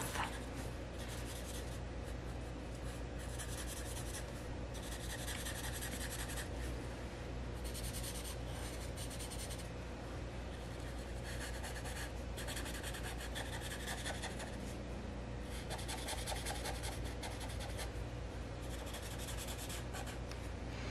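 Black felt-tip marker scribbling on paper as it colors in a solid area, in runs of quick strokes a second or two long with short pauses between.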